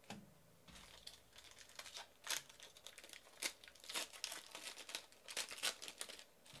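Gold foil wrapper of a Panini Plates & Patches football card pack being torn open and crinkled by hand: a run of sharp, irregular crackles that grows louder toward the end.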